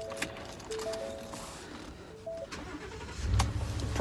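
Soft background music with a simple melody and a few light clicks. About three-quarters of the way through, a low, steady rumble comes in and holds: the Ford F-150 pickup's engine starting and settling into idle.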